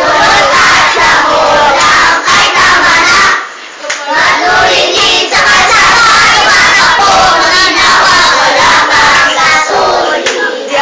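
Many children's voices shouting loudly together, with a brief lull about three and a half seconds in.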